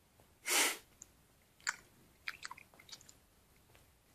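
A person chewing a mouthful of small chewy, sugar-coated sour sweets: a short burst of breath about half a second in, then scattered soft wet clicks and smacks from the mouth.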